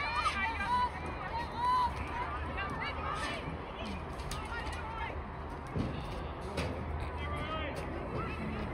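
Voices of spectators and players at a soccer match, overlapping talk and calls with no clear words, over a low steady hum.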